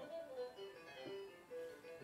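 Electric guitar turned into a piano sound in real time by the MiGiC guitar-to-MIDI converter: a handful of single notes, each ringing on, played faintly over a room's loudspeakers.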